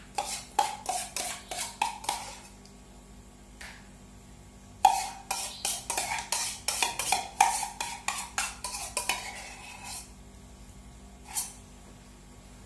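A wire egg whisk scraping and knocking inside a stainless steel cup to empty out whisked avocado: runs of quick, ringing metal clinks, a first run, a pause of about two seconds, then a second, denser run, and one last clink near the end.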